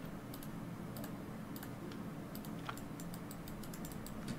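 Computer keyboard and mouse clicks: scattered single clicks, then a quick run of about a dozen near the end, over a steady low hum.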